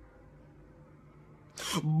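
Near silence with a faint steady hum, broken about one and a half seconds in by a man's voice: a sharp breathy burst and a falling vocal sound that runs into speech.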